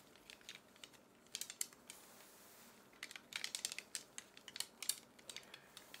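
Faint, quick rustles and light clicks of the shaman's coloured cloth divination flags (obangi) on their wooden sticks as they are handled, in a short cluster about a second in and a busier run from about three seconds on.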